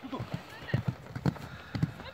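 Hoofbeats of a horse cantering on grass turf: dull thuds coming in strides about every half second.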